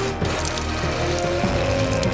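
Projectile vomiting sound effect: a continuous gushing, splashing stream of liquid that never lets up, over background music with long held notes.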